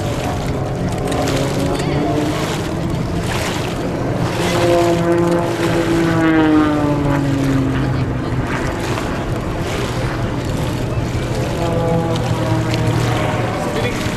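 Zivko Edge 540 race plane's six-cylinder Lycoming piston engine and propeller droning as it flies the low-level course, the pitch dropping as it passes about five to eight seconds in.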